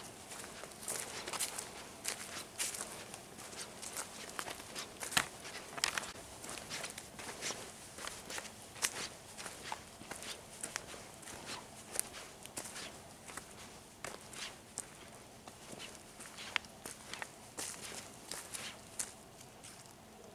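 Footsteps on a forest path covered in dry fallen leaves: irregular crunches and rustles at a walking pace.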